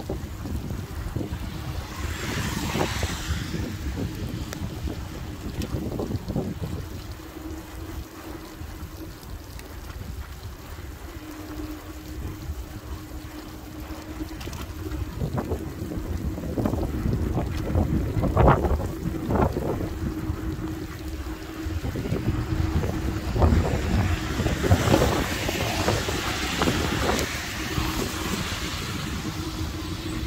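Wind buffeting the microphone on a moving e-bike, over a constant low rumble from the ride and a faint steady hum that comes and goes. Cars hiss past on the wet road about two seconds in and again, longer, near the end.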